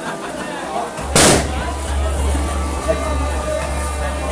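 A single loud, sharp bang about a second in, lasting a fraction of a second, over crowd voices.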